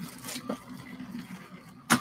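A motorised LEGO train running on its plastic track loop: a faint steady low motor hum, with a few light clicks from plastic set bags being handled and one sharp click near the end.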